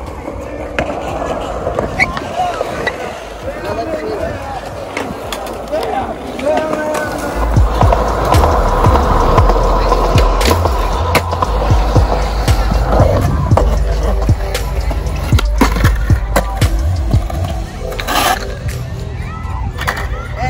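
Skateboard wheels rolling on pavement, with a heavy low rumble through the middle of the stretch, and repeated sharp clacks of the board's tail popping and wheels landing as tricks are attempted.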